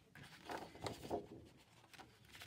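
Faint rustle and slide of paper cards being handled, with a few soft scrapes about half a second and a second in.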